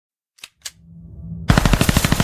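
Machine-gun fire sound effect: a fast, even burst of about a dozen shots a second starting about one and a half seconds in. Before it come two sharp clicks and a low hum that swells.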